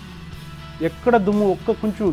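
Background music bed under a man's voice: the music alone for a moment, then the man speaking again from a little under a second in.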